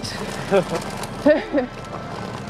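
Laughter in two short bursts, the second about a second after the first.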